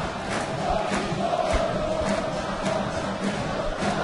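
Large stadium crowd of home football supporters chanting and singing together, a steady wall of voices.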